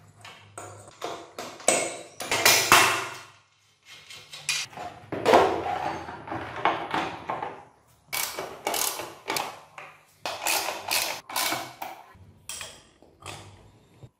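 Metal motorcycle parts and hand tools clicking and clanking in a run of sharp knocks, a few of them ringing on for about a second, as a rear wheel is fitted into its swingarm.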